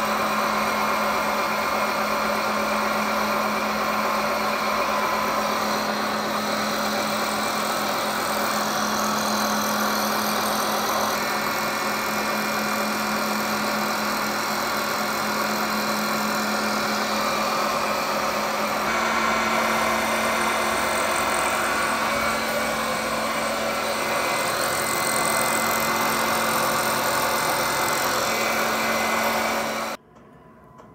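Milling machine spindle running flat out, about 3,500 rpm, with a very small end mill taking light quarter-millimetre cuts along a keyway slot in a shaft under flowing coolant. The hum is steady, with a slight shift in pitch about two-thirds of the way through.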